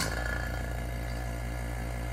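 Electric vacuum pump of a transmission valve-body vacuum tester switched on, starting suddenly and then running steadily with a low hum and a faint steady whine.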